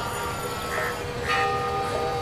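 Temple bells ringing, their metallic tones hanging on and overlapping, with a fresh strike about 1.3 seconds in.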